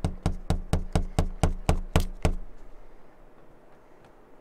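Rapid knocking on a window pane, about four knocks a second, stopping a little over two seconds in.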